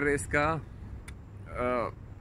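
A man's voice speaking a few short words, with pauses between them, over a steady low background rumble.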